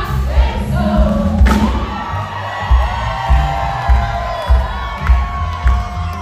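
Live band music with a steady bass-drum beat, and a crowd cheering and shouting close around.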